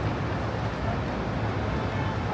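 Steady city street ambience: a low traffic rumble with a murmur of passing voices.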